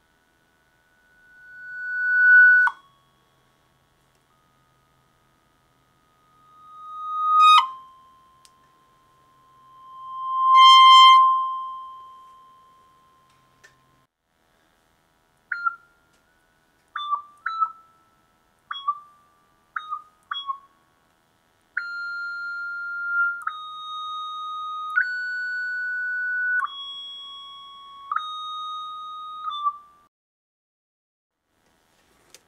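Homemade single-voice Arduino synthesizer in a cigar box, played from a touch-strip keyboard through its built-in speakers: one clear, whistle-like tone at a time. First come three long notes that swell up slowly and cut off sharply, then a handful of short separate notes, then a connected melody stepping from pitch to pitch.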